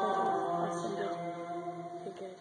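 Liturgical chant sung in a large church, long held notes that fade toward the end.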